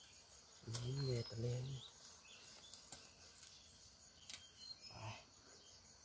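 Mostly quiet forest undergrowth. A man's low voice murmurs two short sounds about a second in, with a few faint clicks and faint high chirps around it.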